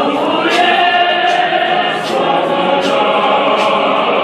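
A choir of men's and women's voices singing together, over a steady beat of sharp hits about three times a second.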